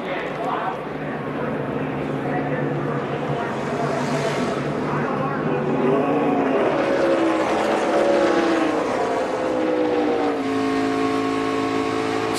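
NASCAR Sprint Cup stock cars' V8 engines running on pit road, the pitch gliding up and down as cars pass and accelerate. Near the end it settles into one steady engine note.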